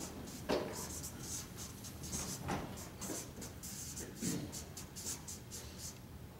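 Felt-tip marker writing on flip-chart paper: a quick, irregular run of short scratchy strokes as letters are drawn.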